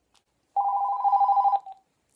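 Telephone ringing: one trilling electronic ring about a second long, starting about half a second in.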